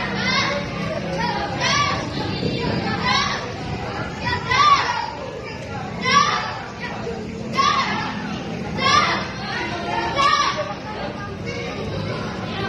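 Children's voices calling out over and over in a regular rhythm, a call about every second and a half, over the steady chatter of a group of children.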